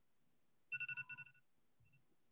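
A short electronic ringing tone, like a phone ringtone: a quick warble of rapid pulses on two high pitches lasting under a second, followed near the end by one brief beep.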